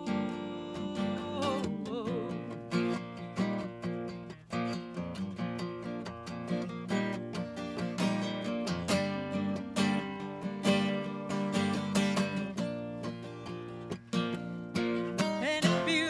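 Steel-string acoustic guitar strummed in a steady rhythm, an instrumental break in a country song.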